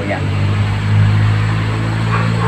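A steady low engine-like hum that swells slightly about a second in, with a faint hiss over it.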